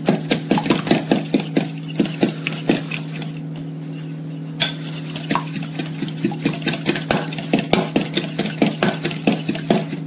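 Eggs being beaten in a stainless steel bowl, the utensil clicking rapidly against the metal, about three or four strokes a second, with a short pause about halfway. A steady low hum runs underneath.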